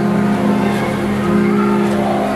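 Church band playing soft background music: low chords held steadily, with the notes shifting once partway through.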